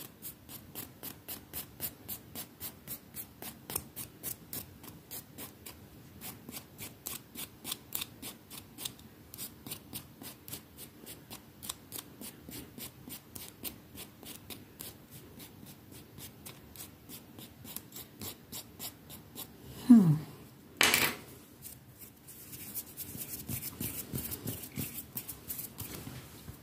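A nail file rasping across the tip of a broken fingernail to smooth it, in steady short strokes at about two to three a second. About twenty seconds in there is a loud bump, after which the strokes come faster and closer together.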